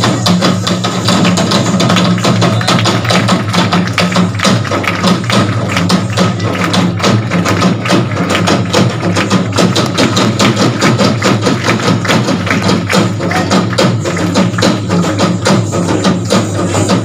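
A troupe of large double-headed barrel drums, slung from the players' shoulders, beaten in a fast, unbroken rhythm of dense strokes.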